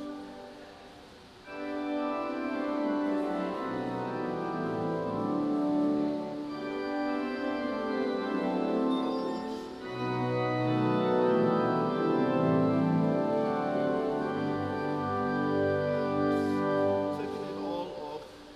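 A two-manual, 27-stop Sanus digital church organ playing held chords over a moving bass line. A chord dies away at the start before new chords come in about a second and a half in; there is a brief break in the phrase about ten seconds in, and the music falls away near the end.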